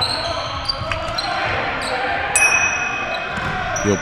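Basketball being dribbled on a hardwood gym floor, with sneakers shuffling and one short high squeak about two and a half seconds in, all echoing in the large gym.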